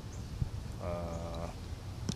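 A man's drawn-out hesitation sound, a single held 'eee' vowel at an unchanging pitch lasting about half a second, over a steady low hum.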